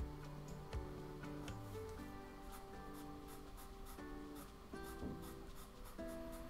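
A pastel pencil scratching lightly over paper in short strokes, over faint background music of soft held notes.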